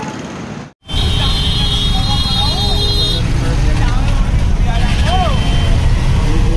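Steady low rumble and road noise of a vehicle ride through street traffic, after a brief dropout about a second in. A steady high horn-like tone sounds for about two seconds, and brief voices come through the noise.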